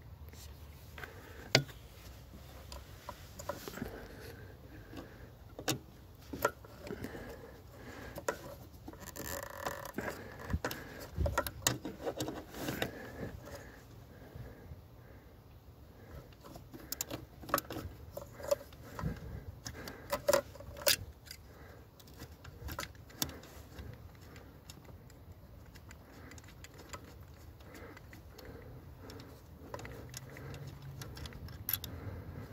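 Scattered clicks, taps and rustles of a hand working the plastic brake light switch and its wiring connector on a VW Golf 7's brake master cylinder, with a sharp click about a second and a half in and busier handling in the middle.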